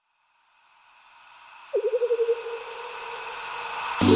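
Background electronic music's build-up. About a second of silence, then a rising swell of hiss, joined about halfway by a wobbling synth tone that holds until the full beat drops in.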